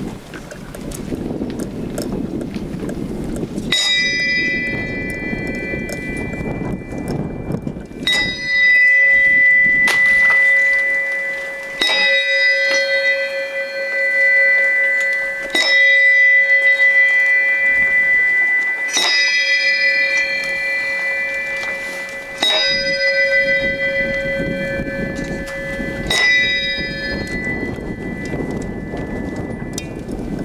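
A bell tolled slowly seven times, one strike about every three and a half to four seconds, each left ringing until the next: a memorial toll for those lost at sea. Wind rumbles on the microphone before the first strike and after the last.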